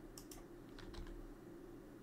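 Faint computer keyboard typing: a few scattered key clicks over a low steady hum.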